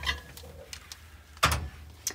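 Handling knocks from lifting a silicone loaf pan out of a countertop convection microwave oven: a light clunk at the start and a louder thump about a second and a half in.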